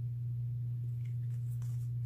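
A steady low-pitched hum that does not change, with a few faint light rustles near the end.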